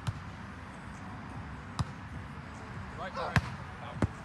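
Hands striking a volleyball three times in a rally: sharp smacks spaced about a second and a half apart. The last one, near the end, is the loudest, with a short shout just before it.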